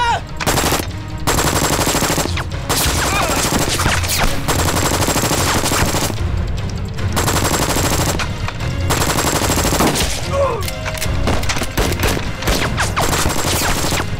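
Long bursts of rapid machine-gun fire with several short breaks, and a man shouting over it once or twice.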